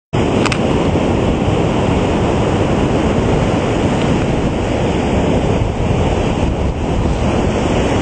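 Wind blowing hard across the microphone on a beach, a loud steady rush that is heaviest in the lows, with surf breaking underneath.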